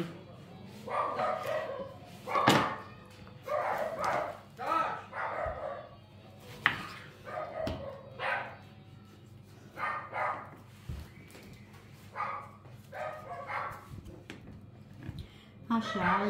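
Neighbours' dogs barking repeatedly in short, irregular barks, with a few soft knocks of a knife on a wooden cutting board as tomatoes are sliced.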